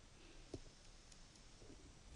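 Near silence with a faint click about half a second in and a few fainter ticks: a stylus tapping on a tablet while writing.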